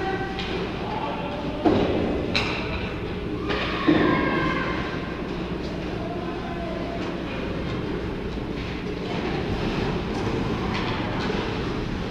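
Indoor ice hockey rink during play: a steady low hum fills the arena, with distant echoing voices and two sharp knocks with a ringing tail about two and four seconds in.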